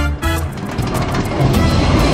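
Music at first, then a steady rumbling rush as a roller coaster car runs, with music still faintly beneath.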